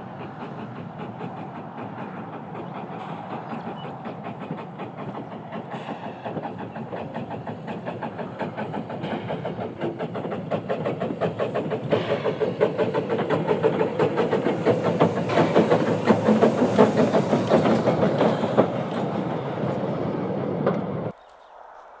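Steam Motor Coach No 1, the Pichi Richi Railway's 'Coffee Pot' steam railcar, running past at close range: quick, even exhaust beats and wheels clicking over rail joints and points, growing louder as it approaches and passes. The sound cuts off suddenly about a second before the end.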